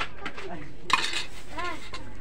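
A single sharp click about a second in, over faint voices in the background.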